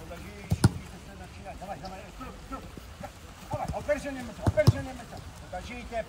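Footballs being kicked on a grass pitch: sharp thuds, one about half a second in and two close together at about four and a half seconds, with players calling out around them.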